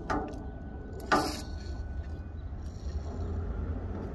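A short hiss of a WD-40 aerosol can sprayed through its straw onto a seized sensor nut, about a second in, over a steady low rumble.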